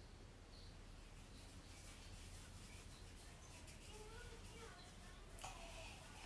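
Near silence: room tone with a steady low hum, a few faint short chirps and a brief faint rustle near the end.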